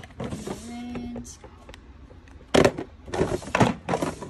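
A plastic storage drawer sliding on its runners, then several sharp knocks and clatter of small paint bottles being put into the drawer among other bottles.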